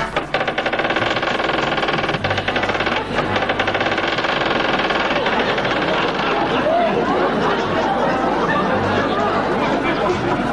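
Studio band music with a rapid snare drum roll, giving way to the studio audience's chatter and shouts.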